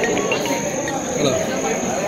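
Several people talking at once, an indistinct murmur of voices, with a steady high-pitched tone running through it.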